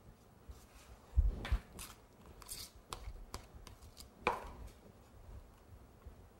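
A spatula tapping and scraping on a cake board as buttercream is dabbed on: a handful of sharp knocks and short scrapes, the loudest about a second in and again past four seconds.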